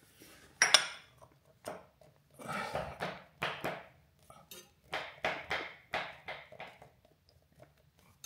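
Steel cup-type oil filter wrench clinking and scraping as it is handled and fitted over a motorcycle's spin-on oil filter. There is a sharp metallic clink under a second in, then a string of short scrapes and rattles.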